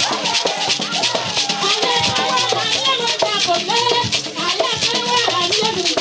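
Traditional dance song: voices singing over rattles shaken in a quick, steady rhythm.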